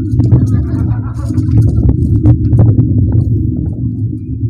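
Steady, loud low rumble, with faint murmured voices and a few small clicks over it.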